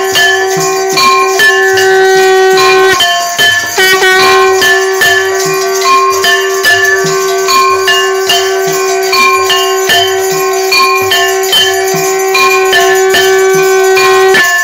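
Devotional aarti music: bells and jingling percussion struck in a steady quick beat over a long held note.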